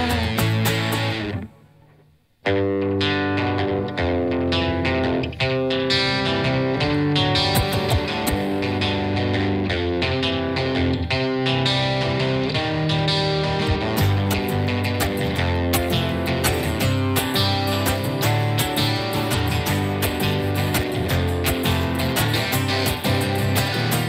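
Live instrumental passage on electric guitar and acoustic guitar playing together. About a second and a half in the music stops almost to silence for under a second, then the guitars come back in and carry on steadily.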